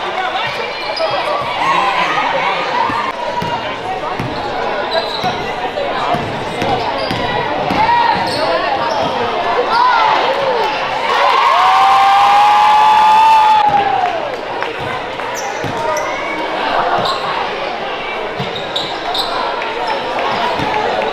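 A basketball being dribbled on a hardwood gym floor, among echoing voices of players and spectators. About halfway through, a louder stretch of some two seconds carries one long held tone that drops at its end.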